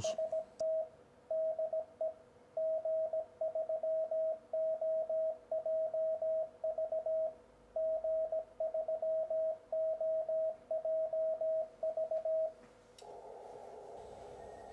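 Morse code sidetone from an Icom IC-7300 transceiver sending a CW test call, 'TEST TEST DE G3OJV G3OJV', from its memory keyer at 18 words a minute: a single steady tone keyed on and off in dots and dashes. The keying stops shortly before the end, and a soft band of receiver hiss follows as the rig drops back to receive.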